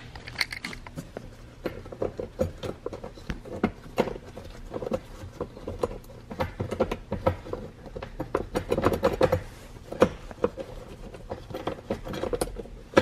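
Ratchet with a 14 mm socket on a long extension, clicking in quick, irregular runs while backing out loosened seat-mounting bolts.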